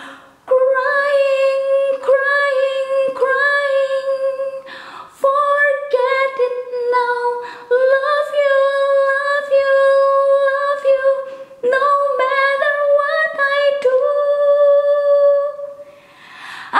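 A woman singing unaccompanied, holding long notes in phrases with short breaks between them.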